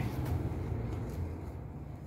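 Low steady background rumble with a few faint short clicks, as the equipment in the case is handled.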